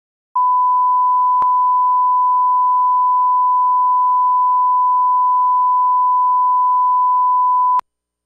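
A steady electronic reference tone, the line-up test tone at the head of a recording: one unchanging pitch held for about seven and a half seconds and cut off sharply. There is a brief click about a second in.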